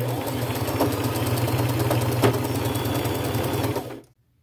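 Domestic electric sewing machine running at a steady speed, sewing a zigzag stitch through lace and cotton fabric, with a couple of sharper clicks along the way. It stops suddenly at the end.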